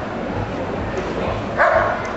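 German Shepherd Dog barking at a helper in the protection blind during the hold-and-bark: one loud bark near the end, part of a slow, regular run of barks.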